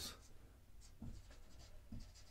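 Faint scratching of a marker drawing a curve on a whiteboard, in a few short strokes that begin about a second in.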